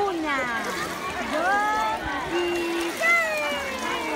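Adults calling to a baby in sing-song voices with sliding pitches, including a held note midway and a long falling call near the end, over light splashing of pool water.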